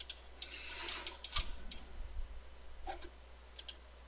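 About ten sharp, irregular computer mouse clicks, bunched in the first two seconds and again near the end, with a brief soft rustle around a second in and a steady low hum underneath.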